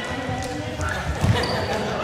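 Several people's voices and laughter echoing in a large sports hall, with footsteps thudding on the hard gym floor and one heavier thud a little past the middle.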